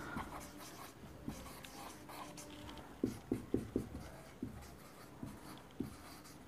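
Dry-erase marker writing on a whiteboard: faint short strokes of the pen tip, with a quick run of them about three to four seconds in and a few more near the end.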